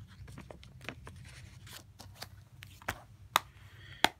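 Plastic Blu-ray case being handled and shut: a run of light clicks and rustles, then two sharper plastic clicks near the end, over a steady low hum.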